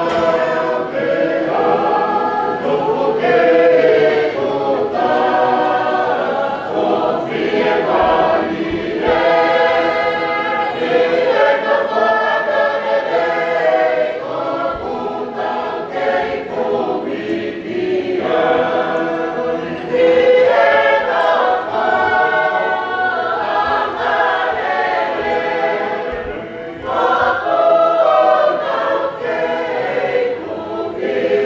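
Congregation singing a hymn together in many voices, the singing running on phrase after phrase with brief dips between lines.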